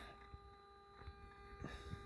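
Near silence: a faint steady hum with a few light clicks, as of the motorcycle's ignition key and keyring being handled after switching on.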